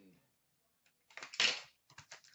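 Plastic shrink-wrap being torn off a trading card box: a brief rustling rip about a second and a half in, then a few faint crinkles.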